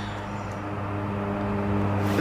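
A steady low hum with a hiss over it, growing slightly louder through the pause.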